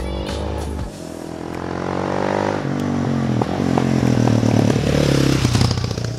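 Four-stroke single-cylinder supermoto motorcycle accelerating and shifting up twice, its engine pitch rising and then dropping at each gear change. It grows louder toward the middle, and its pitch falls away near the end as it passes by.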